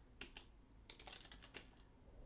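A handful of quiet, separate keystrokes on a computer keyboard.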